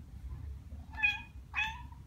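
Ragdoll cat giving two short, high-pitched meows about half a second apart.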